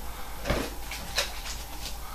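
Faint handling of an aluminium Coca-Cola can being shaken in the hands, with a few soft knocks, the clearest about half a second in.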